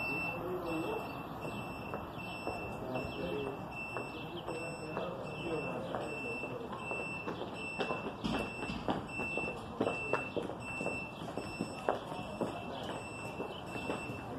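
An electronic beeper sounding a short, high-pitched beep over and over at an even pace, about three every two seconds, with faint voices and a few sharp knocks underneath.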